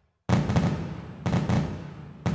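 Explosion sound effect in an electronic dance track, cueing the pyrotechnics. After a brief silence, a sudden loud blast comes about a quarter second in and dies away, followed by two more heavy booming hits.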